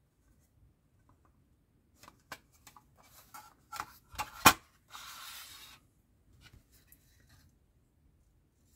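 Hard plastic model-motorcycle body parts being handled and set down: a scatter of light clicks and taps, the loudest a sharp click about halfway through, then a brief rub of plastic sliding on the table.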